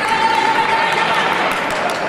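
Electronic fencing scoring machine sounding one steady tone for about a second and a half, fading out, over the murmur of a sports hall.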